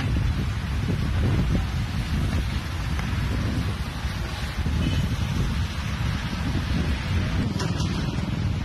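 Wind buffeting the microphone: a gusty low rumble with a steady hiss over it.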